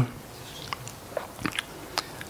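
A pause in close-miked speech: faint room tone with a few small, short mouth clicks and lip smacks from the speaker at the microphone.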